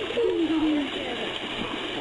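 A horse pawing and sloshing water in an inflatable kiddie pool, a steady splashing hiss, with a woman's long, falling cooing 'ooh' over it in the first second.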